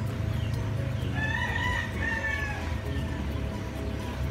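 A rooster crowing once, starting about a second in and lasting about two seconds, with a short break midway.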